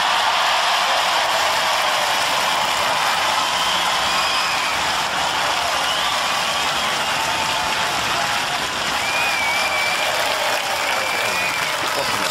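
Studio audience applauding and cheering: dense, steady clapping with a few voices rising above it.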